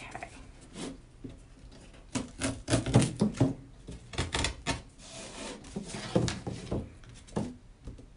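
X-Acto craft knife cutting stretched canvas along a wooden stretcher frame: irregular short scraping cuts and knocks that come in bunches, the loudest about three seconds in.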